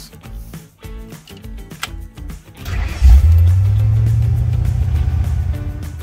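The engine of a 1969 Ford Fairlane station wagon starting: it catches about three seconds in, revs, then eases back toward a steady idle.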